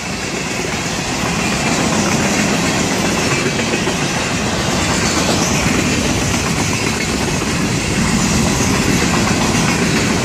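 Steady rolling noise of a passing mixed freight train's cars, steel wheels running on the rails close by, growing a little louder a couple of seconds in.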